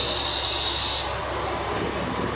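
KiHa 47 diesel railcar standing at the platform with its engine idling as a steady low rumble, under a steady high hiss that stops abruptly a little over a second in.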